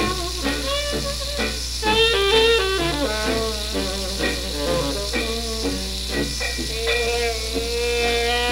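A 1920s small hot-jazz band playing from a Brunswick 78 rpm record on a record player, with moving melody lines over a steady beat. A steady low hum and surface hiss run underneath the music.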